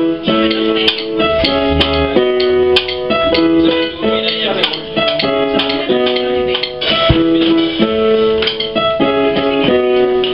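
Worship song music led by a keyboard, with held notes that change every half second to a second.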